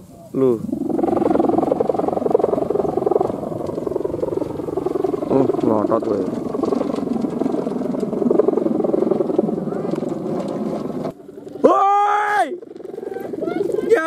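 Bow-and-ribbon hummer on a giant Balinese kite droning loudly and steadily in the wind. The drone cuts off about eleven seconds in, and a man's loud shout follows near the end.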